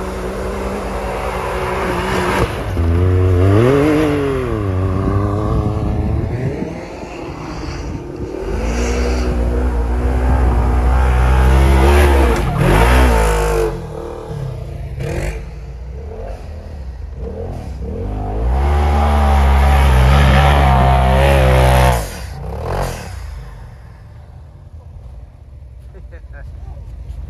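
Side-by-side UTV engine revving hard in deep snow, its pitch climbing and falling in three long bursts, then easing off near the end.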